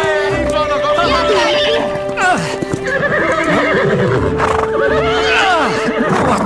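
Cartoon horses whinnying several times over background music that holds long, steady notes.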